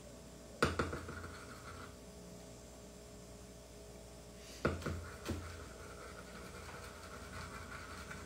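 Metal spoon stirring a flour-and-water poolish in a small ceramic bowl: a sharp clink against the bowl about half a second in, then soft scraping, and two more clinks about five seconds in followed by steady scraping.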